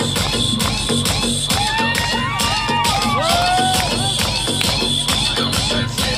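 Loud amplified music with a steady beat from a stage sound system, with a crowd cheering over it.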